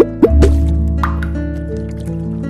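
Channel outro jingle: a bright music bed with cartoon bubble-pop sound effects, several quick upward-sweeping bloops in the first second as an animated bubble appears.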